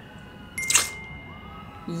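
A short, sharp hit about half a second in, followed by a steady high ringing tone that holds for over a second, with a lower tone joining partway through: a game sound effect.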